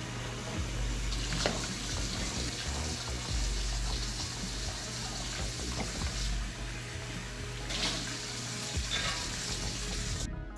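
Kitchen tap running steadily into a soapy sink while a tumbler and dishes are washed by hand, with a few knocks and clinks of items in the sink, one about a second and a half in and more near the end.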